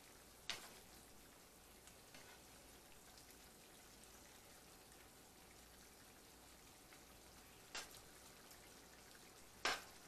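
Curry shrimp simmering faintly in a skillet while a wooden spatula stirs it. Three sharp knocks stand out, the loudest near the end.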